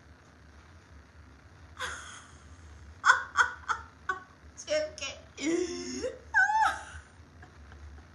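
A woman laughing in short quick bursts, then making drawn-out wordless vocal sounds that glide up and down in pitch.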